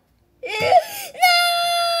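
A voice crying in a high wail: a short ragged sob about half a second in, then one long held wail from just past a second in, its pitch sagging slowly.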